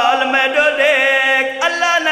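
A zakir's voice chanting a mournful Shia lament (masaib) in a sung, wailing style. He holds a long note with a wavering pitch, breaks off briefly near the end, and starts a new one.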